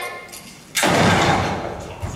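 A single loud rifle-shot stage sound effect about three-quarters of a second in, ringing out and dying away over about a second in the hall.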